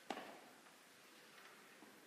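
Near silence in a large hall, broken by one short sharp knock just after the start that dies away quickly, then a few faint ticks.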